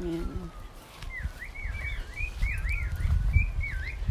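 A songbird singing a quick run of whistled notes, each dipping in pitch and sweeping back up, several a second from about a second in.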